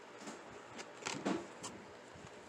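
Plastic-blister card packaging of a Matchbox die-cast truck being handled and set down on a cardboard surface: a few light clicks and one louder rustle and knock just over a second in.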